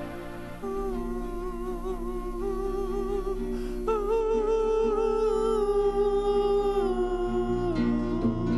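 A man humming a slow melody in long, slightly wavering held notes over a nylon-string classical guitar. The melody steps up about four seconds in and falls back near the end.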